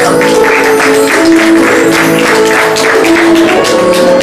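Live jazz quartet playing an instrumental passage: held melodic notes over a steady beat of about four soft strokes a second.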